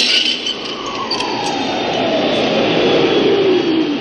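A sound effect with no beat under it: a noisy rush carrying one tone that slides slowly downward over about three seconds.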